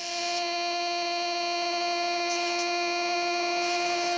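Live electronic noise music: a steady electronic tone held on one pitch, with a stack of overtones and a hiss above it.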